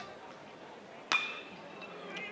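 One sharp metal ping of a college baseball's metal bat striking a pitched ball about a second in, ringing briefly, over low background noise.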